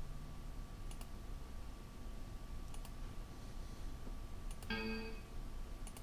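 A few faint, sparse computer mouse clicks as the PCB software's netlist dialog is worked. About five seconds in there is a short, steady pitched tone lasting about half a second.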